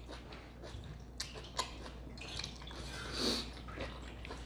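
Close-miked chewing of steak salad, with a few sharp wet mouth clicks and a soft hiss about three seconds in.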